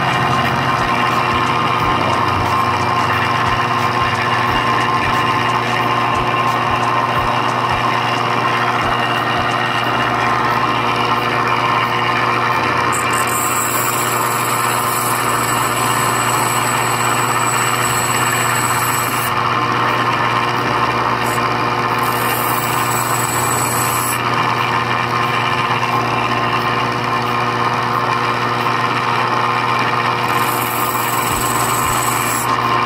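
Sharpening machine's electric motor running steadily with its grinding wheel spinning, while the steel jaws of a Mundial 722 cuticle nipper are ground against the wheel's edge. It is the first, coarse finishing pass on the cutting edge. A high grinding hiss comes and goes over the hum, strongest from about 13 to 19 seconds in and again briefly a few seconds later.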